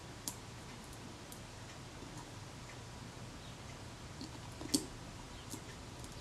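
Brittle old adhesive cracking in faint, scattered clicks as the leatherette is prised off the metal base of a Kodak Retina Reflex camera with a small tool. One click about three-quarters of the way in is louder than the rest.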